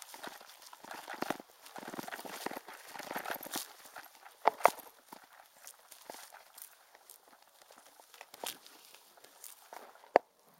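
Bicycle jolting over a rough grass field: grass brushing the tyres and irregular rattling knocks from the bike and its front basket, with two sharper knocks about four and a half seconds in.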